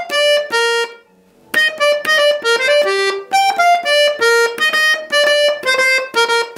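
Jupiter button accordion (bayan) playing a single-line melody on its right-hand buttons. A short phrase of notes is followed by a brief pause about a second in, then a quicker, continuous run of notes.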